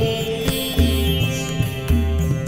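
Sitar and tabla improvisation: plucked sitar notes with shimmering overtones over tabla. A deep, ringing bass drum stroke comes about once a second.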